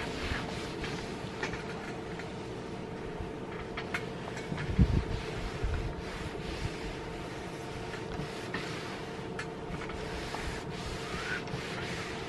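Electric iron pushed back and forth over a water-sprayed cotton muslin scarf: the soleplate swishes on the damp fabric with a faint sizzle as the hot iron evaporates the surface water, over a steady hum. A single low thump about five seconds in.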